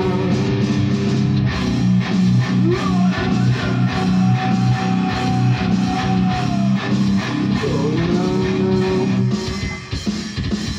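Distorted electric guitar played through an amp in a heavy rock riff of strummed chords, with a man singing long held notes over it. The playing drops off briefly near the end.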